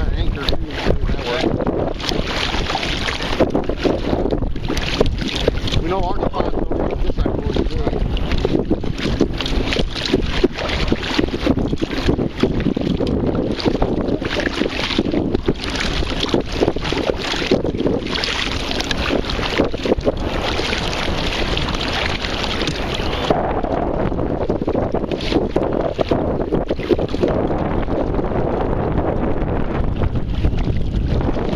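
Wind buffeting the microphone while a kayak is paddled, with the paddle blades repeatedly dipping and splashing in choppy water. The high hiss drops away about three quarters of the way through.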